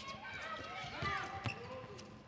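Live court sound of an indoor handball match: a handball knocking on the court floor a few times, under faint players' calls echoing in the hall.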